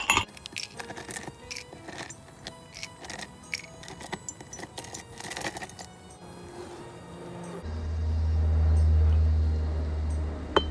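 Ice cubes clinking and knocking into a glass, many sharp clinks over the first six seconds or so. Near the end a low engine rumble of a vehicle swells up and holds.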